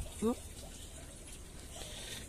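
A man says one short questioning word, then faint steady background noise with no distinct event.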